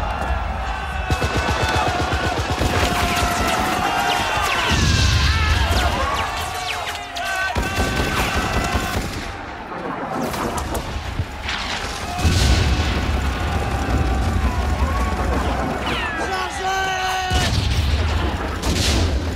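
Battle soundtrack: rapid rifle and machine-gun fire with heavy explosions whose deep rumble swells up three times, under music and voices.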